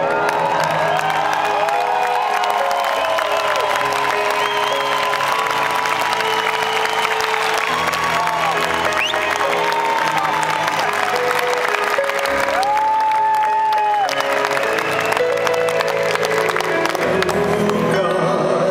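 Live concert music heard from the audience: held keyboard notes and a male singing voice with gliding, drawn-out notes. Crowd cheering and applause run underneath throughout.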